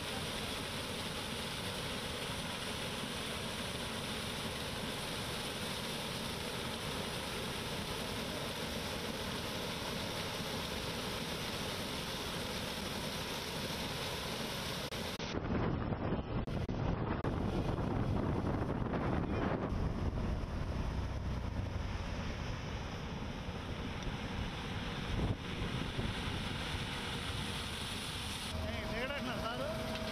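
Combine harvester running steadily, with wind on the microphone. About halfway through, the sound turns louder and rougher in the low end, with gusts of wind buffeting.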